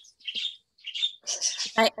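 Several short, high bird chirps in the background of a video-call's audio, before a woman's voice begins near the end.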